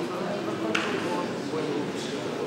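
Indistinct speech.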